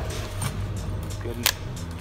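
Background music with a steady low bass, and a single sharp click about one and a half seconds in.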